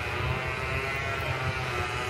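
Steady drone of a motor or engine running at an even, constant speed, with no change in pitch.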